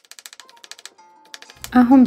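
Faint, quick knife taps on a bamboo cutting board, about ten a second, as shallots are minced. A woman starts speaking near the end.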